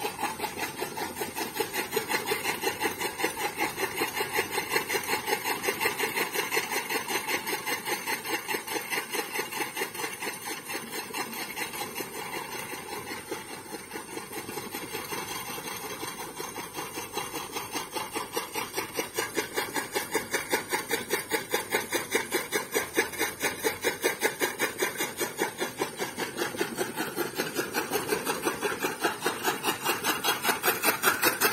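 Old camel-driven chaff cutter running, its blade wheel and drive clacking in a fast, even rhythm as green fodder is chopped. The rhythm is softer in the middle and louder again near the end.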